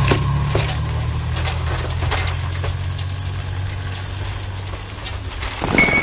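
Toyota Tacoma pickup engine running at low speed as the truck drives through snow, a steady low rumble that fades away near the end. Music starts just before the end.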